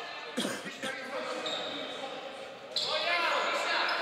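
Basketball game sounds in a sports hall: a ball bouncing on the hardwood court about half a second in, then voices of players calling out, starting suddenly near the end.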